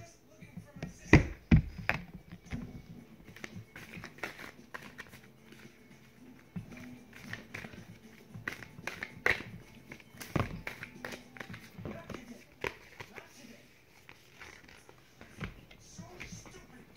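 A worn deck of tarot cards being shuffled by hand: a string of light taps and riffles, with two louder knocks about a second in.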